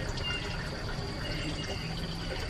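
Faint, steady outdoor background noise: a low even hiss with a thin, constant high-pitched whine running through it.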